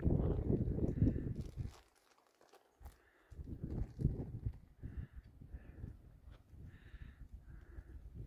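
Wind buffeting the microphone in uneven gusts, dropping away almost to silence for about a second and a half about two seconds in, then picking up again.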